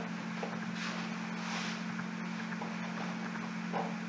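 A whiteboard being wiped with a cloth: a few soft rubbing swishes, strongest in the first half, over a steady low electrical hum.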